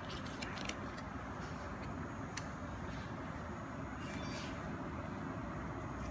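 A steady low background rumble, with a few brief faint rustles and clicks of a stack of trading cards being handled and shuffled.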